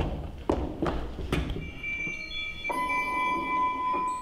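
Three heavy thumps on a stage floor in the first second and a half, then a bell-like chime of several steady, held tones that starts just before halfway and rings on.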